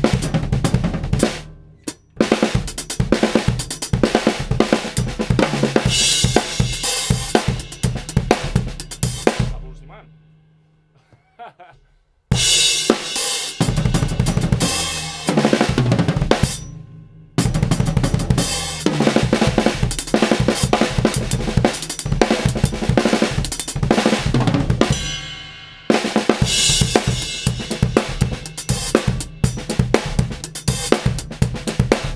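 Acoustic drum kit played live: fast improvised fills and grooves on snare, bass drum, toms and cymbals. The playing comes in several bursts broken by short stops, one of them dying away to near silence for about two seconds before the next burst starts.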